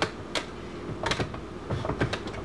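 Hard clear plastic parts of a party drink fountain clicking and knocking together as they are handled and fitted, a few sharp clicks spread across two seconds.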